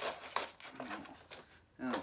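Clear plastic action-figure blister packaging crackling and clicking as it is handled, a run of short sharp clicks that stops shortly before the end.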